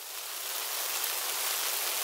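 Rain sound effect: a steady hiss of falling rain that fades in and builds over the first second, then holds steady.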